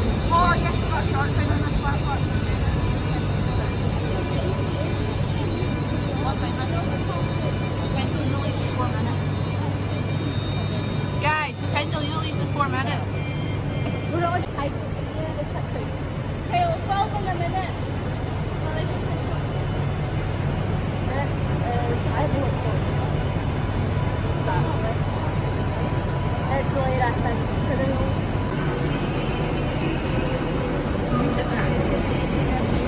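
Ambience of a large covered railway station: a steady low hum from trains standing at the platforms, with indistinct voices in the background on and off.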